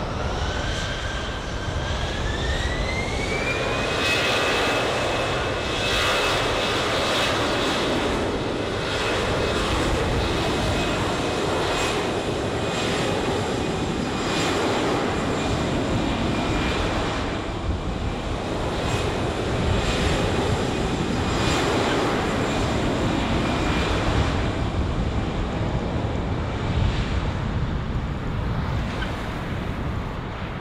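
Airbus A320-200's jet engines spooling up to takeoff thrust for the takeoff roll. A whine rises in pitch over the first four seconds, then holds steady above a loud, even roar as the airliner accelerates down the runway.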